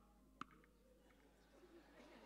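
Near silence: room tone with one sharp click about half a second in and a few fainter ticks just after.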